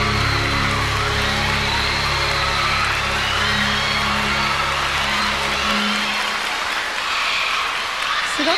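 The final held chord of a live song, with audience applause over it; the low bass note drops out about six seconds in, leaving the applause.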